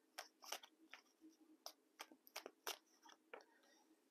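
Faint, irregular clicks and taps, about a dozen, of a tarot deck being shuffled by hand and a card being laid down.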